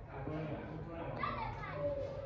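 Speech: people's voices talking.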